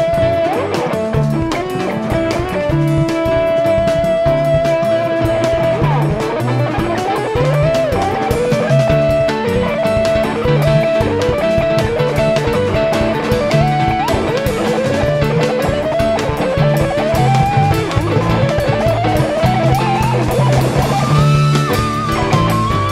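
Live rock band playing: an electric guitar lead holds a long high note, then plays repeated rising slides that climb higher toward the end, over a bass line and drums.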